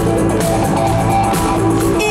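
Rock band playing live: an instrumental passage with electric guitar over bass and drums, between sung lines.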